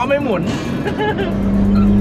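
Speech in the first half-second, then from a little past halfway a loud, steady engine drone at constant revs inside a Toyota Supra's cabin.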